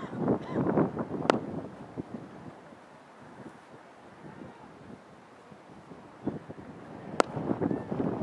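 Wind buffeting the microphone in gusts on an outdoor field, with two sharp cracks, one just over a second in and one near the end.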